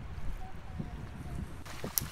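Wind rumbling on the microphone by shallow water, with a hiss that swells near the end and a brief click just before it ends.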